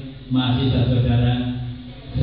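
A man's voice, one long, drawn-out utterance that starts a moment in and fades near the end.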